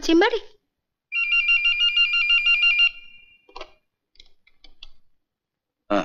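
Telephone ringing: one trilling ring lasting about two seconds. It is followed by a short clatter and a few faint clicks, as of the handset being lifted.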